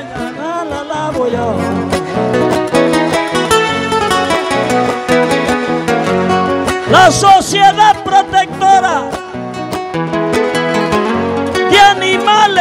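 Acoustic guitar playing the instrumental interlude between sung décima verses, strummed steadily, with a louder wavering melody line coming in about seven seconds in.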